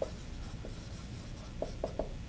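Dry-erase marker writing on a whiteboard: faint stroke sounds with a few light taps as a word is written out.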